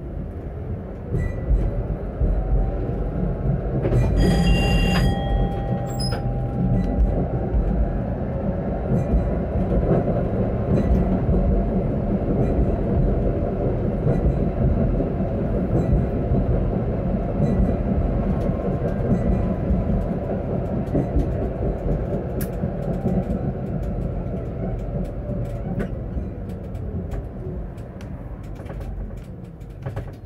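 Electric tram running on street track, heard from inside the car: the rumble of wheels on rails, with a motor whine that rises in pitch as it pulls away and falls again as it slows to a stop near the end. A short tone sounds about four seconds in.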